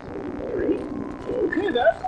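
Cartoonish voices laughing, with quick swoops up and down in pitch, on an old VHS-recorded television soundtrack.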